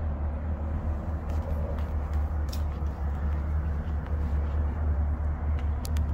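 A vehicle engine idling: a steady low rumble, with a few faint clicks over it.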